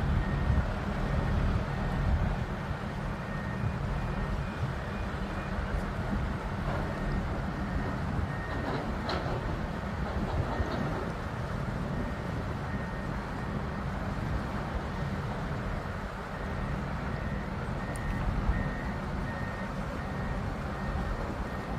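A heavy crane's engine running steadily with a low rumble under load. A warning beeper sounds in runs of short, evenly spaced beeps that come and go.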